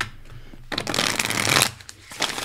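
A tarot deck being shuffled by hand: a short tap at the start, then a dense rustle of cards flicking against each other for about a second, starting a little before the middle.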